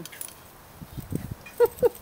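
A woman starts laughing near the end, two short 'ha' bursts, after a second and a half of faint low scuffing from a small dog rolling on its back in the grass.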